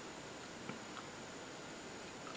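Faint handling of a paint tube as its cap is twisted open, with two or three small ticks about halfway through over quiet room hiss.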